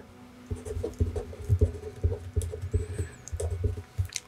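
Marker pen writing a word by hand on a sheet of paper, close to the microphone: a quick string of short, irregular scratching strokes and taps.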